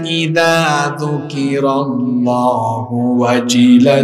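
A man's voice chanting "Allah" in long, drawn-out melodic notes that rise and fall, a devotional zikr chant, over a steady low hum.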